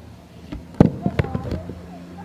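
A quick run of five or six sharp knocks and clicks within about a second, the loudest just under a second in, over a steady low hum.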